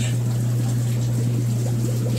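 Fish-farm water pumps running: a steady low hum with water trickling and splashing through the tanks.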